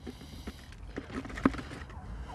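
Mixed grain seed sliding off a plastic feed dish into a plastic bucket, a low rustle with a few light taps of the dish against the bucket.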